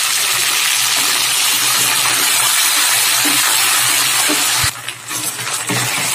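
Ginger-garlic paste sizzling in hot oil among fried onions in a kadai, stirred with a wooden spatula. The sizzle is loud and steady, dipping briefly near the end before picking up again.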